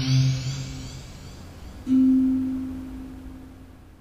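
A synthesizer sweep rising in pitch and a held low note fade out. About two seconds in, a single low note is struck on a tank drum and rings, slowly dying away.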